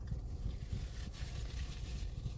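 Low steady rumble of a car idling, heard from inside the cabin, with a few faint soft ticks.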